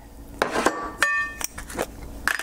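Several light knocks and clinks of glass and kitchenware as a glass spice shaker is picked up. The clearest clink comes about a second in and rings briefly.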